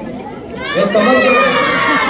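A crowd of children calling out together, many high voices at once, rising about half a second in and staying loud through the rest.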